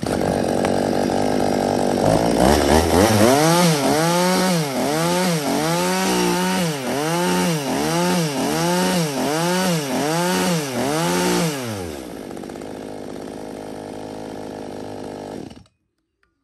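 Stihl MS 192T top-handle chainsaw's small two-stroke engine running at idle, then revved in about ten quick throttle blips, a little over one a second, before dropping back to idle; the sound cuts off suddenly near the end.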